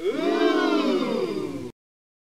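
Audio logo sting for a production studio: a synthetic sound effect of layered tones swooping up and down in pitch, cutting off abruptly less than two seconds in.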